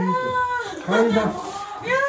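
A person's voice making drawn-out, high, wavering sounds without clear words.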